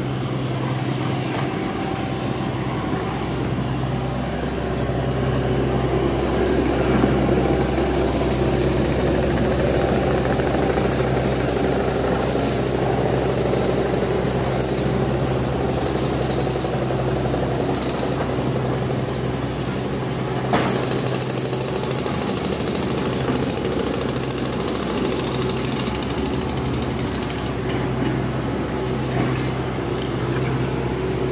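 Steady machine noise: a low hum with a rough rattle over it and a high thin whine that comes and goes.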